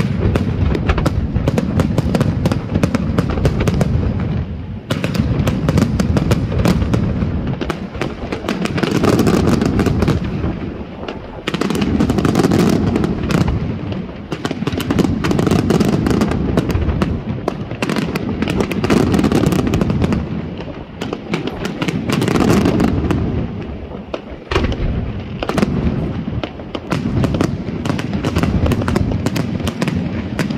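Aerial fireworks display: a continuous barrage of shell bursts and dense crackling, swelling and easing every three seconds or so.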